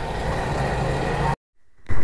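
Steady engine noise at a fuel pump, which stops abruptly about a second and a half in for half a second of silence at an edit. Steady scooter engine and road noise then come in just before the end.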